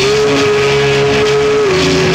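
Live punk rock band playing loudly: electric guitars, bass and drums, with one long held note that drops slightly in pitch near the end.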